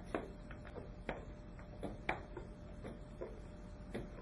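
Faint knocks, about one a second, from a wooden rocker board tipping and tapping against the floor as it is pushed under a person balancing on it.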